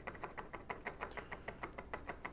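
Electrolyte solution draining from a plastic funnel into the hydrogen torch machine's tank, the last of it falling in quick, even drips of about six a second.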